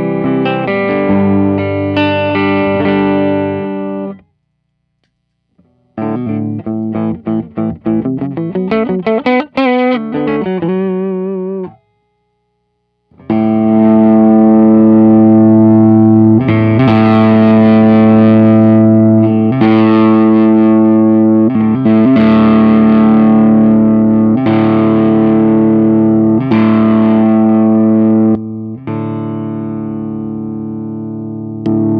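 Electric guitar played through a Xotic BB Preamp overdrive pedal. A picked phrase stops about four seconds in. After a short pause comes a fast run ending in notes bent with vibrato, then another pause, then loud ringing chords struck again every two to three seconds.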